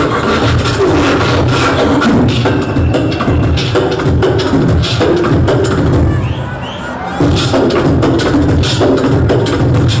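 Live beatboxing into a handheld microphone through a club PA: a dense, rhythmic stream of mouth-made kick, snare and hi-hat sounds. After about six seconds it thins out for about a second, then comes back hard.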